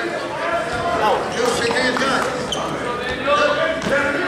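Several voices of spectators and coaches calling out and talking at once, echoing in a gymnasium, with a few thumps during a wrestling bout.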